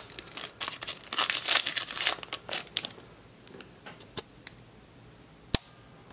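Foil Yu-Gi-Oh Magic Ruler booster pack wrapper crinkling as it is torn open and handled: a quick run of crinkles in the first three seconds, then sparser ones. A single sharp click comes near the end.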